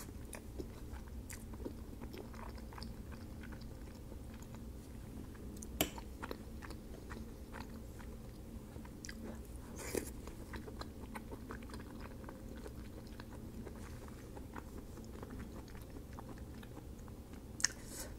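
A person chewing soft, creamy pasta close to the microphone, with many small wet mouth sounds and three sharper clicks spaced several seconds apart.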